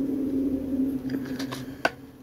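A woman humming one held, slightly wavering note with her mouth closed, and a sharp click near the end.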